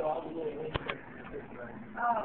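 Indistinct low voices and room noise, with two sharp clicks close together a little under a second in.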